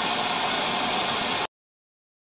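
Static hiss from an untuned analogue television showing snow. It cuts off suddenly about one and a half seconds in.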